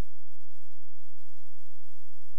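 No programme sound: a steady low electrical hum with faint, soft low pulses roughly three times a second, the kind of line noise left when a player sits idle on its menu screen.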